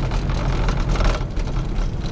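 Loud, continuous low rumbling noise.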